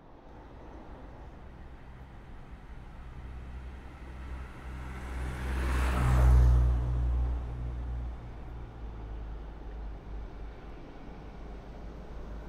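A car passing by outdoors: a steady low traffic rumble that swells to a peak about halfway through and then fades back.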